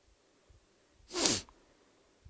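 A single short sneeze from a man, about a second in, with a pitch that drops as it ends.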